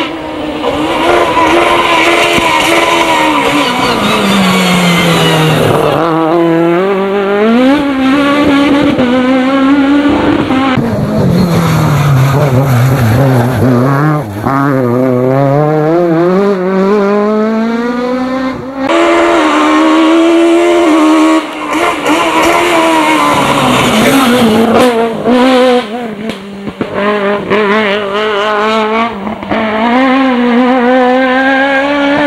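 Peugeot 306 Maxi kit car's naturally aspirated four-cylinder engine revving hard, its pitch falling as it brakes and shifts down for corners, then climbing again as it accelerates away, several times over.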